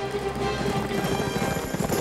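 Horses galloping, with a rapid, continuous patter of hoofbeats, over music.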